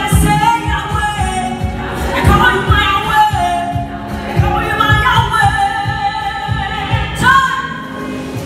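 A woman singing gospel through a microphone, holding long notes and sliding between them, over amplified backing music with a steady drum beat.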